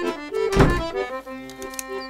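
Accordion music playing, with one loud thunk about half a second in from a wooden shop door being shut.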